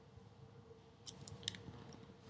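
A few faint, quick clicks about a second in, over a quiet steady hum: controls being pressed on the computer running the slides.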